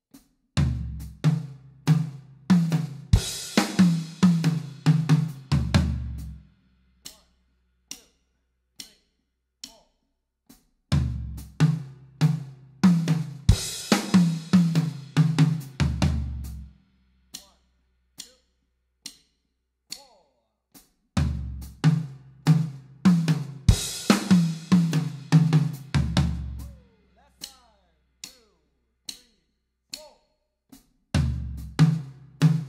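Acoustic drum kit playing a tom fill three times over, each run of about six seconds: quick groups of strokes moving across snare and high, medium and floor toms with bass drum, one cymbal crash partway through and low drum hits closing it. Regular light clicks fill the gaps between the runs.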